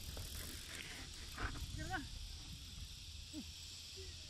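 Outdoor ambience of wind rumbling on the microphone under a steady high hiss, with two short rising-and-falling calls, one about two seconds in and one near the end.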